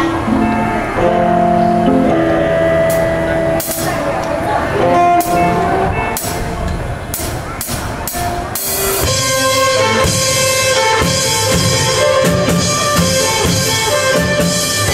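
A small live band playing a slow song: sustained melody lines over scattered cymbal strokes, then the full band with drum kit, bass and electric guitars comes in about nine seconds in.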